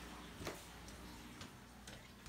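A few faint, scattered clicks over quiet room tone.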